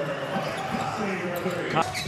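A basketball being dribbled on a hardwood court, with background voices from the court and crowd.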